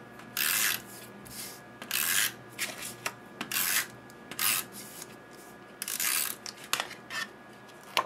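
Paper rubbed in short, dry swipes, five main strokes each about a third of a second long, with a few lighter scrapes between them, as a patterned cardstock panel is worked for adhesive and pressed down.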